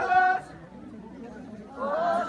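A group of voices singing a Kham Tibetan circle-dance song in unison. A sung phrase ends about half a second in, then comes a pause with crowd chatter, and the next phrase starts near the end.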